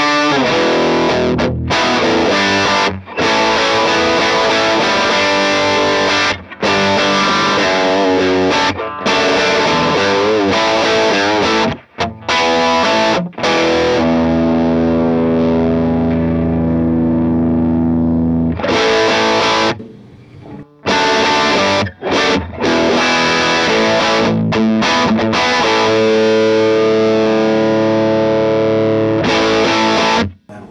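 Les Paul electric guitar played through a Divided by 13 FTR 37 tube amp set for crunchy overdrive: riffs and strummed chords, with one chord held and left to ring for about four seconds near the middle and a few short breaks between phrases.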